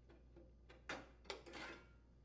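Faint clicks and light knocks of a mower's debris shield being handled and lifted off, a few spaced taps followed by a brief soft scrape in the second half.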